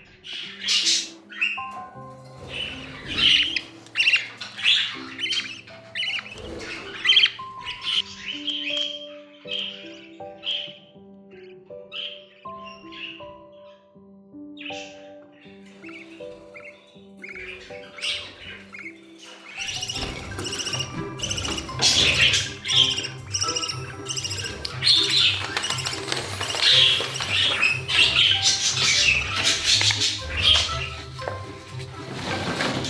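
Budgerigars chirping and squawking in many short, high calls over background music of held notes; about two-thirds of the way in the music fills out with a low, steady beat.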